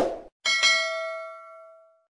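Subscribe-button sound effect: the tail of a short click, then a single bell-like notification ding about half a second in that rings on several tones and fades out over about a second and a half.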